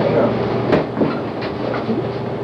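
Home-movie film projector running with a steady clatter and hum.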